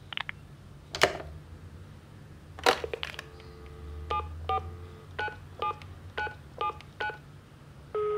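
A telephone handset clicks as it is hung up and picked up again. A steady dial tone follows, and then about seven short touch-tone (DTMF) beeps as a number is dialled.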